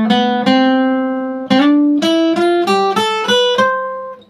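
Acoustic guitar playing a C major scale one plucked note at a time: a note held for about a second near the start, then about six quick notes climbing step by step, the last left ringing.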